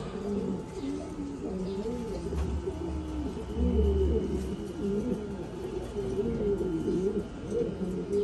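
Several domestic pigeons cooing, their calls overlapping continuously. A low rumble joins in for a couple of seconds in the middle.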